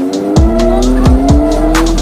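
Electronic music with a heavy beat and deep bass. Over it, a vehicle engine revs, its pitch climbing steadily.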